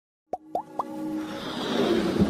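Three quick plops, each gliding up in pitch and each higher than the last, followed by a swelling whoosh over a held chord that grows louder: the synthesized music and sound effects of an animated logo intro.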